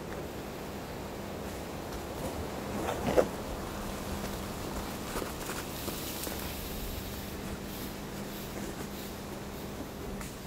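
Footsteps and rustling through leafy forest undergrowth over a steady outdoor background hum, with one short rising call about three seconds in.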